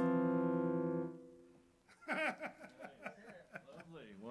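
Final chord of a song on a digital stage piano, held and then fading out over about a second; soft voices follow near the end.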